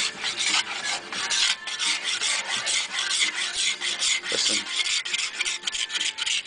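A blunt hand cabinet scraper drawn again and again along a wooden Telecaster neck, a dry rasping scrape with each stroke, two to three strokes a second. It is taking out the fine scratch marks while the neck is reshaped from a C to a V profile.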